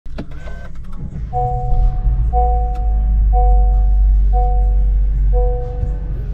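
An electronic tone of two pitches sounding together, repeated five times about once a second, over a loud steady low hum, after a few clicks at the start.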